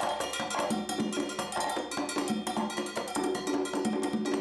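Congas played with rapid, continuous hand strokes in a Cuban rhythm, together with other bright metallic percussion.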